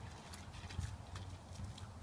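Husky's paws stepping over dry dirt and leaves: a string of light, irregular taps over a low steady rumble.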